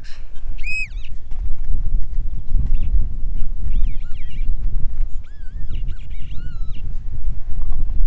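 Wind rumbling steadily on the microphone in open country, with a few faint, short, high-pitched arching calls in the background.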